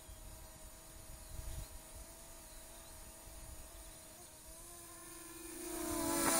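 Faint steady hum of a Syma W1 brushless GPS quadcopter's motors and propellers in flight, growing louder near the end.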